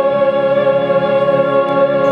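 A soprano holding one long, steady note with a symphony orchestra's strings playing beneath her.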